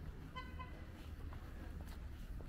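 A vehicle horn gives one short toot about half a second in, over a steady low rumble.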